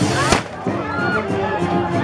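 Band music playing with crowd voices over it. A single sharp firecracker bang comes about a third of a second in, among the fizzing of handheld fireworks.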